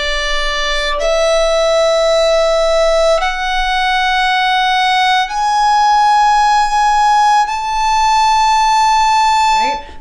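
Solo violin bowing the top of an A major scale slowly in half notes, one long bow per note of about two seconds, climbing step by step through D, E, F sharp and G sharp to the high A, which is held and then stops just before the end.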